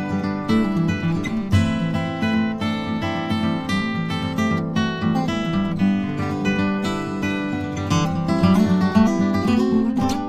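Background music of acoustic guitar, strummed and picked in a steady pattern.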